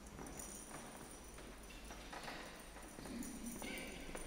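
Faint footsteps of heeled shoes on a tiled floor, a light tap at each step.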